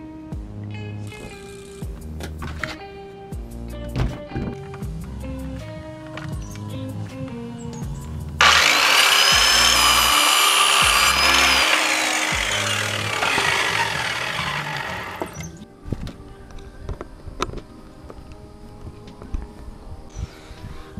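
Handheld corded circular saw cutting a wooden board to size: it starts suddenly about eight seconds in, runs with a high whine that drops in pitch as the blade takes the cut, and winds down after about seven seconds. Background music with a steady beat plays throughout.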